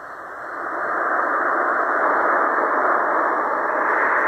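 Tecsun portable shortwave receiver's speaker hissing with steady band noise on 40 m lower sideband, through the narrow single-sideband filter. The station has faded into the noise. The hiss swells over the first second as the volume comes up, then holds steady.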